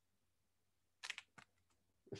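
Near silence, broken about halfway through by a few faint, quick clicks close together, with one more soft click just after.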